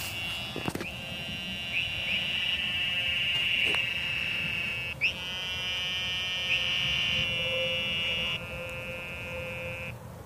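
Cicadas buzzing: several long, steady, high buzzes overlap, each starting with a quick upward swell, and the loudest one comes in about five seconds in.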